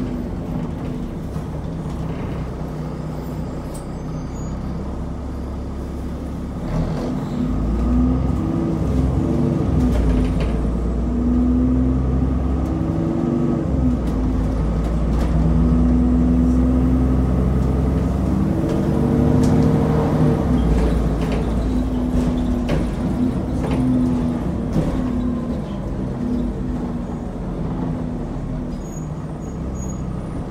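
Alexander Dennis Enviro400 double-decker bus heard from inside the lower deck: the diesel engine runs low and steady, then from about seven seconds in it grows louder and its pitch climbs and drops again several times as the bus pulls away and changes up through its gears.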